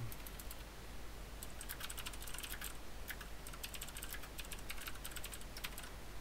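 Typing on a computer keyboard: a quick, irregular run of key clicks that starts about a second and a half in.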